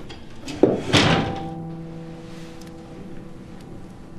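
Two dull thunks close together about a second in, followed by a held chord of background music that slowly fades.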